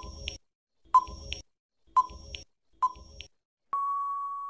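Quiz countdown timer sound effect: a short, sharp beep-like tick once a second, four times, then a longer steady beep near the end signalling that the time to answer has run out.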